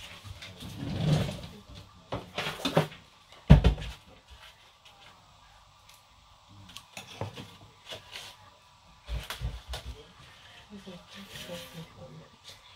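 Fresh sweet corn husks being torn and rustled by hand, in scattered short crackling bursts, with one heavy thump about three and a half seconds in. Voices are heard in the background.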